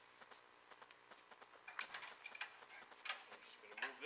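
A wrench ratcheting on a conveyor belt take-up bolt as it is tightened: a run of light metal clicks, with a few sharper clinks in the second half.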